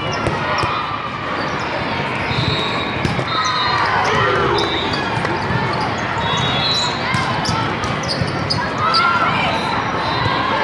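Indoor volleyball play in a large echoing hall: sharp ball hits and short high squeaks over a steady din of many voices from players and spectators, with shouted calls about four seconds in and again near the end.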